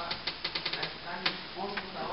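A man speaking through a microphone, with a run of sharp, irregular clicks over the speech: a quick cluster about half a second in and single louder clicks near the start and after a second.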